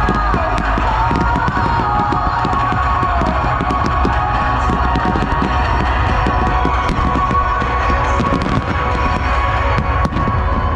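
Music played over a loudspeaker, with fireworks going off throughout: many sharp bangs and crackles and a low rumble under the music.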